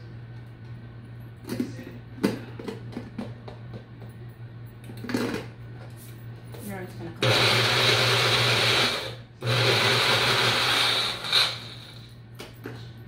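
Baby Bullet blender motor running in two bursts of about two seconds each, with a short break between, pureeing avocado with water. Before it, scattered knocks and scrapes of a spatula and hands against the plastic blender cup.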